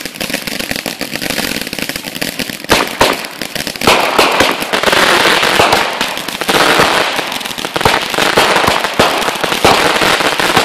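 Consumer fireworks: a multi-shot aerial cake firing a rapid run of shots that burst into crackling stars. Steady popping and crackle at first, then a couple of sharp bangs about three seconds in, and from about four seconds in a louder, unbroken crackle as many stars burst at once.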